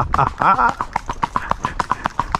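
A filly's hooves beating on a paved road in a rapid, even rhythm of about eight beats a second, as she moves along at a smooth gait. A brief voice is heard about half a second in.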